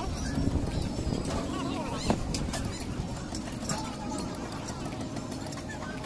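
Glass bottles and a metal spoon clinking against glass mugs of crushed ice as a blue lemon-soda drink is mixed and stirred, in irregular small clicks over busy street noise with background voices.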